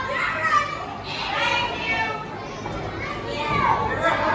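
Children in the audience shouting and calling out, several high voices at once.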